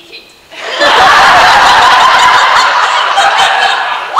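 Theatre audience laughing loudly, the laughter rising suddenly about a second in and holding.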